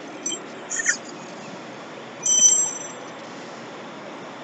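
Metal truck wheel hardware clinking a few times in the first second, then one brief, bright metallic ring a little past two seconds, over a steady hiss of shop background noise.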